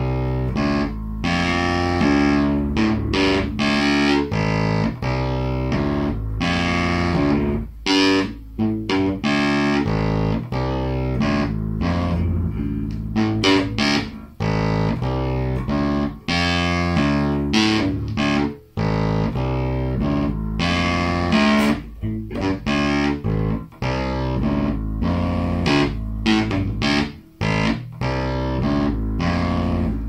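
Electric bass guitar played with the fingers through an amplifier: a continuous run of plucked notes changing pitch, with a few short breaks between phrases.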